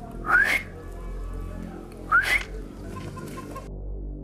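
Two short rising whistles, about two seconds apart, over quiet background music.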